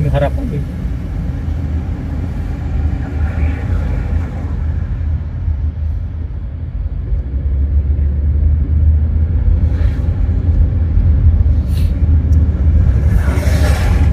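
Car driving on a city street, heard from inside the cabin: a steady low rumble of engine and road noise, louder in the second half.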